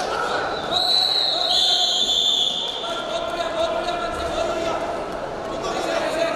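A referee's whistle is blown to stop the wrestling action. It is one high blast of about two seconds, starting about a second in, and its pitch drops a step halfway through.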